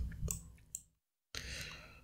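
A few faint clicks of computer keys in a quiet room. About a second in, the sound drops out completely for about half a second before faint room noise returns.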